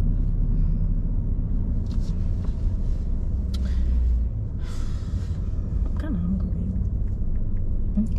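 Steady low rumble of a car driving, heard from inside the cabin, easing slightly about halfway through. A few brief hissing noises come in the middle.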